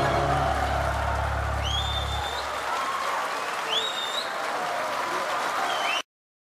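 Audience applauding a stage curtain call, with three rising whistles from the crowd. The last held chord of the music fades out about two seconds in, and the sound cuts off suddenly at the end.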